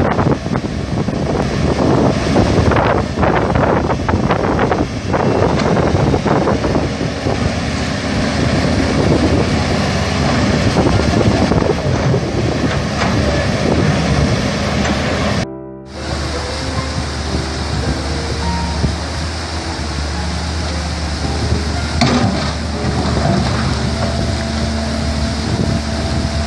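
Water rushing through a gap in an earth embankment across a river, with diesel excavator engines running and wind buffeting the microphone. The sound drops out for a moment about two-thirds of the way through.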